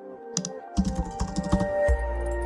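Computer keyboard typing clicks over background music, with a deep bass layer coming in a little under a second in.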